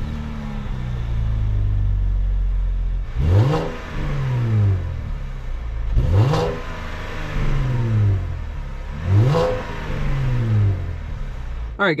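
A 2016 Cadillac CT6's 3.6-litre V6 idling through its exhaust just after a cold start. It is then revved three times, about three seconds apart, each rev climbing and dropping back to idle.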